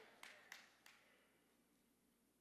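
Near silence, with three faint clicks in the first second.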